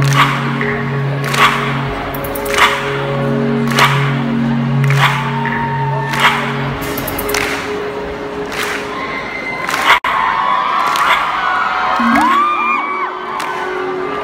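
Live band music heard from within a concert crowd. Sustained synth chords sit under a sharp beat that comes about every 1.2 seconds, and the chords drop out about halfway. Fans then scream and cheer over the beat.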